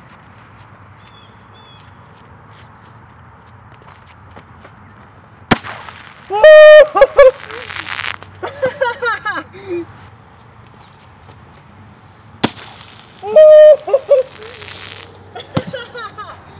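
A Diet Coke and Mentos bottle rocket going off as it hits the road: a sharp pop, then the hiss of foam spraying out and a loud shout. The pop and the shout come again about seven seconds later.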